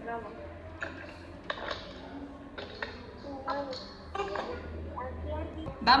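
Faint, scattered bits of talking over a low steady hum.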